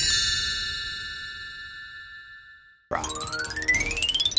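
Cartoon logo sting: a bright chime chord rings and slowly fades away over nearly three seconds. After a short gap, a rising whistle-like sound effect with fast sparkling clicks begins.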